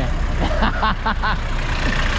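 Engine of an IME Rastrojero pickup running at low revs as it rolls slowly past close by, a steady low rumble with a fast even pulse.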